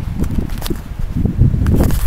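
Footsteps of a person walking while carrying a handheld camera, with rumbling handling noise on its microphone and several short, sharp knocks.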